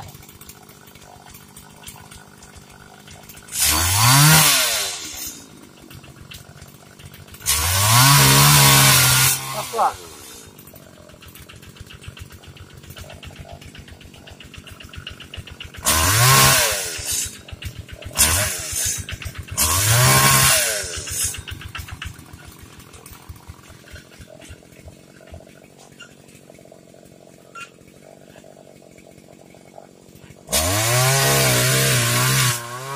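Petrol-engined pole saw idling, revving up five times in bursts of one to two seconds as it cuts oil palm fronds and dropping back to idle between. The engine's pitch climbs steeply at the start of each rev.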